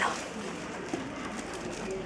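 A bird cooing faintly and low over steady outdoor background noise.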